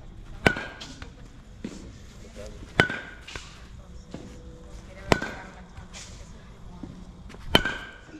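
Baseball bat hitting pitched balls in a batting cage: four sharp cracks about two and a half seconds apart, each with a short metallic ring.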